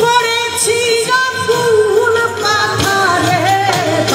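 A woman sings a Baul folk song through a PA system, holding long notes that bend in pitch, with drum accompaniment.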